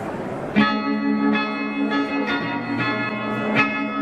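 Bell-like ringing notes start abruptly about half a second in and keep being struck in a quick repeating pattern, each note ringing on over the next.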